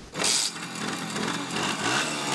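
A Simson Schwalbe scooter's small two-stroke single-cylinder engine running as it rides along, starting just after the beginning and growing slowly louder.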